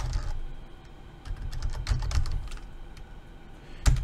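Typing on a computer keyboard: irregular key presses in short runs with brief pauses between them.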